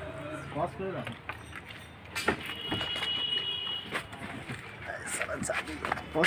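Faint voices in the background, with a sharp click about two seconds in and a brief thin high tone just after it.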